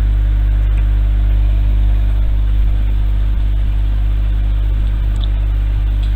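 A loud, steady low hum with a faint hiss over it.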